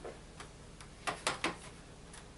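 Three sharp plastic clicks in quick succession about a second in, with a few fainter clicks before them, from the plastic back cover of a Dell Inspiron 23 all-in-one PC being handled as its tabs are worked free.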